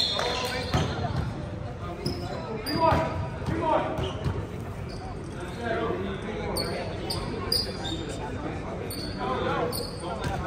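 A basketball bouncing on a hardwood gym floor, with distant voices of players and onlookers echoing in the large hall. A few short, high sneaker squeaks come in the second half.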